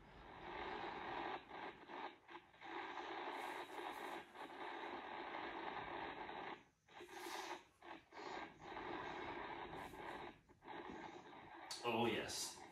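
Weird buzzing noise from a video-call participant's unmuted microphone: a steady, thin, phone-like noise broken by several brief dropouts.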